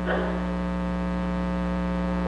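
Steady electrical mains hum, a buzz made of several fixed pitches stacked together, running under a pause in speech.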